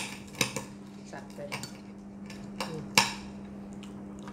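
Knife and fork clinking and scraping on a ceramic plate as crispy roast pork knuckle is cut, a few sharp clicks with the loudest about three seconds in. A steady low hum runs underneath.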